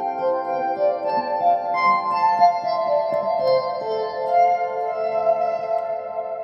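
Electric guitar notes and chords picked slowly and left to ring in the huge reverb of a concrete nuclear reactor hall. Each new note hangs for several seconds and blends with the ones before into a sustained, shimmering wash; the reverb is insane.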